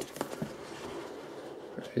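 A cardboard iPad box being handled while its tight lid is worked off: a few light taps and scrapes near the start, then a soft, steady rubbing.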